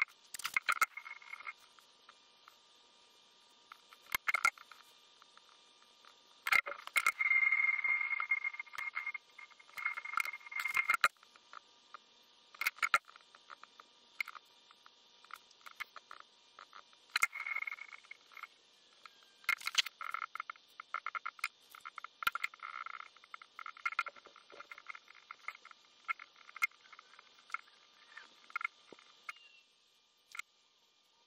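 A cloth rubs over small metal parts of a watchmaker's lathe as the buffing compound is wiped off them. Scattered light clicks and knocks come from the parts being picked up and set down on the metal base plate. The longest stretch of rubbing runs from about six to eleven seconds in.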